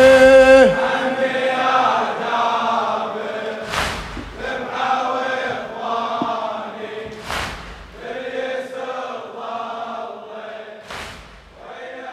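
Male voices chanting a slow lament. A long held note ends about half a second in, then softer layered voices fade away. Three sharp hits, evenly spaced about three and a half seconds apart, cut through the chanting.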